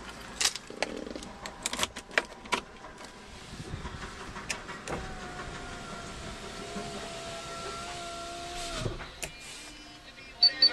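Electric window motor running with a steady whine for about four seconds, then stopping with a clunk as the glass reaches its stop. Before it come several sharp clicks and knocks.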